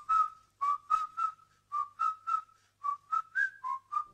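Whistled melody of about a dozen short, detached notes, mostly on one pitch, with one higher note and one lower note near the end. It is the unaccompanied whistled intro of a song, just before the band comes in.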